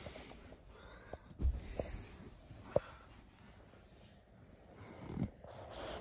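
A person moving about inside a van in the dark: a few short knocks and camera-handling bumps, with faint breathing in between.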